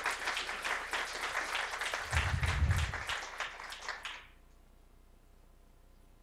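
Audience applauding, dense clapping that dies away about four seconds in, with a brief low rumble in the middle.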